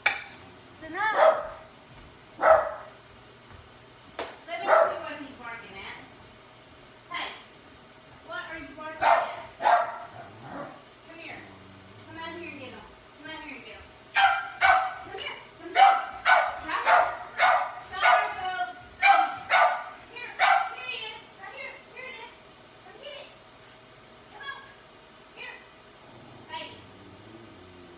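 A dog barking over and over: single barks now and then, and in the middle a quick run of more than a dozen barks lasting several seconds.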